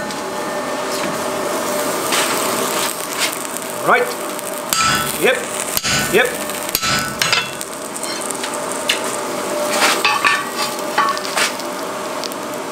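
Hammer blows on a hand punch driving a hole through a red-hot mild steel bar on an anvil, several irregular sharp strikes. Between them, grease on the punch burns on the hot steel with a steady sizzle.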